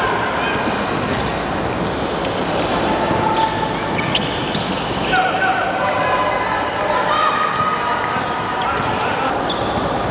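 Live basketball court sound on a hardwood gym floor: a basketball being dribbled, sneakers squeaking sharply as players cut and run, with voices calling out on the court.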